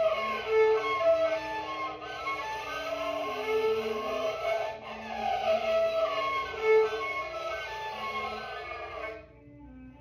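Kyl-kobyz, the Kazakh two-string horsehair fiddle, bowed in a run of shifting notes as an imitation of the sound of wind. The playing stops about nine seconds in.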